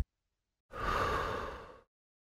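One audible breath out through the mouth, about a second long, starting just under a second in, swelling quickly and then fading away: the breathing cue for an abdominal crunch, exhaling as the upper body curls up.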